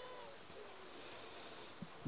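Faint outdoor background, with a held pitched sound trailing off in the first moments and a small click near the end.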